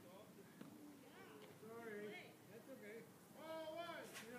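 Faint, indistinct voices of people talking, too unclear to make out words, loudest near the end.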